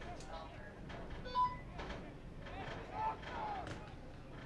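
Distant voices of players and spectators shouting and calling out across an outdoor soccer field, with a short, loud call about a second and a half in and another just after three seconds.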